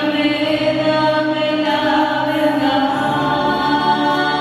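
A small group of women singing a slow worship song together through microphones in long held notes, with electronic keyboard accompaniment.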